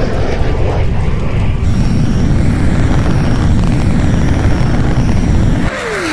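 Jet aircraft passing low, a loud steady rumble that cuts off suddenly near the end, where a falling whistle begins.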